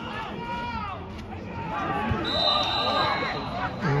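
Voices shouting across an outdoor football pitch during play, with a whistle blown once about two seconds in, held for about a second.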